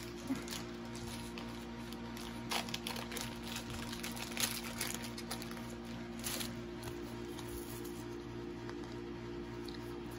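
Thin plastic penny sleeves being handled: light rustling and crinkling with scattered small clicks, busiest a couple of seconds in until past the middle, over a steady low hum.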